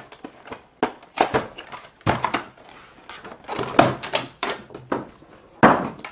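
Hands opening a cardboard toy box and pulling out a plastic carrying case. There is a string of irregular scrapes, rustles and knocks, with the loudest knocks about two-thirds of the way in and near the end.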